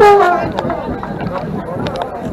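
A loud shout from a person close by, falling in pitch over about half a second, followed by street-crowd chatter.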